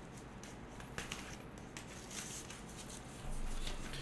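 Tarot cards being handled and drawn from the deck: faint rustles and a few light clicks of card stock. A low rumble rises near the end.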